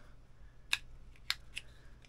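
A few sharp plastic clicks from a small camera clip mount and camera being handled and fitted together, two louder ones about a second apart, over a faint steady hum.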